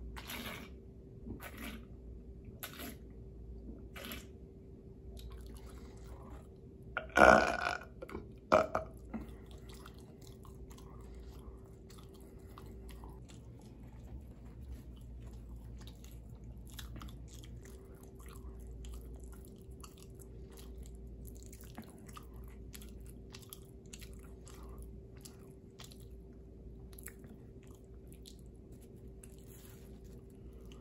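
Close-miked gulps of beer from a can, four of them about a second apart, then a loud burp and a shorter second burp. After that, soft chewing with small wet mouth clicks over a faint steady hum.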